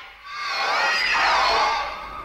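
Short logo sound effect: high, wavering tones that glide up and down and swell about half a second in, then settle into a steady held tone near the end.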